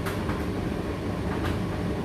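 Indesit IDC8T3 condenser tumble dryer running mid-cycle: a steady motor and drum rumble, with a few soft knocks as the load tumbles in the drum.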